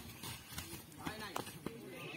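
Voices of players and spectators calling out across the ground, fainter than the shouting just before, with a few short, sharp knocks.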